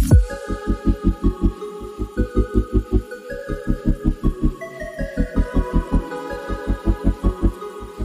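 Background music: an electronic track with a rapid, even pulsing bass, about six or seven beats a second, under held synth chords that shift in steps.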